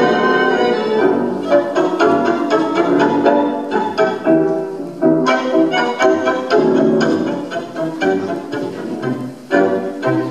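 Recorded tango orchestra playing an instrumental passage, with short, sharply accented chords on a steady beat.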